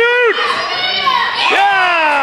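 Loud shouting voices from a children's basketball game: a short high call right at the start and a longer call about one and a half seconds in that falls in pitch, over steady background chatter.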